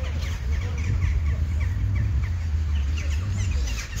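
Birds chirping over and over, several calls overlapping, over a steady low rumble.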